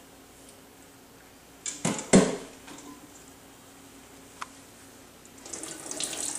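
Two sharp knocks about two seconds in, then near the end water starts pouring from a saucepan onto an Excalibur dehydrator tray set over the sink as a strainer.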